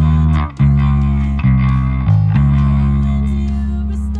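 Electric bass guitar playing the song's verse line: a few plucked notes changing pitch in quick succession, then one low note held and ringing.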